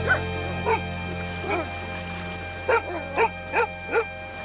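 A German Shepherd giving a run of short, high yips, about seven of them, most in the last second and a half, over background music with a sustained low chord.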